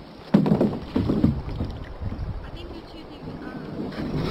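Plastic sit-on-top kayak being slid off a floating dock into the water: a sudden hollow knock about a third of a second in, then a second or so of bumping and scraping of the hull against the dock, quieter after that.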